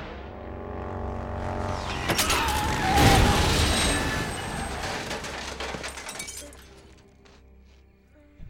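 Motorcycle crash sound effects: sharp impacts peaking about three seconds in, then the bike scraping and sliding along asphalt, dying away to near quiet by the end, with film score underneath.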